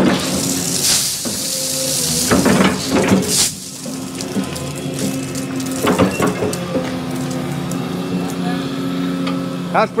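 Volvo excavator's diesel engine running steadily while the bucket is swung, with the last of the gravel spilling off the bucket and rattling into the concrete form in two short rushes in the first few seconds, and a few knocks about six seconds in.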